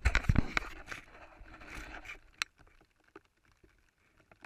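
Handling noise from a camera being moved and settled against an inflatable float: close scraping rubs and knocks in the first half-second that fade out over about two seconds, one sharp click shortly after, then only a few faint ticks.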